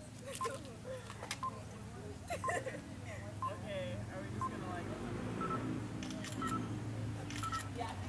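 Short electronic beeps about once a second, each a single tone; they switch to a higher pitch about five seconds in. Sharp clicks are scattered between them.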